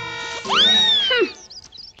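Cartoon background music, then about half a second in a loud, high squeal that rises sharply and slides slowly down over most of a second, followed by a few softer quick glides.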